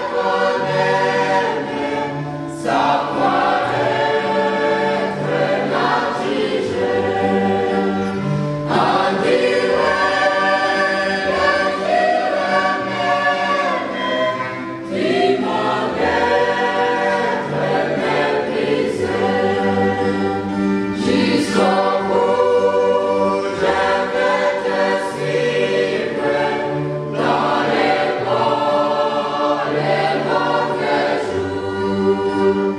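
Mixed choir of women's and men's voices singing a hymn in parts, in sustained phrases that shift chord every second or two.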